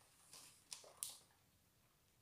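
Near silence, with three faint soft clicks in the first second: mouth sounds of someone chewing a piece of chocolate.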